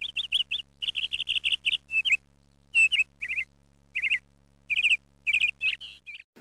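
A small bird chirping: quick runs of short, high chirps, broken by brief pauses.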